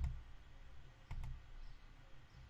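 Two computer mouse clicks, one at the start and another about a second later.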